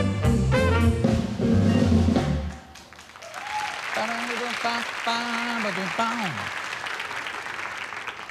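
A jazz band with saxophones, piano and drum kit ends a number loudly and stops about two and a half seconds in. The studio audience then applauds, with a voice calling out over the clapping.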